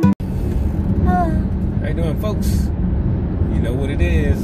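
Steady low rumble of a car heard from inside its cabin, with a few short bits of voice over it.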